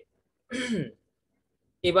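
A man clears his throat once, briefly, about half a second in, the pitch falling. He starts speaking again just before the end.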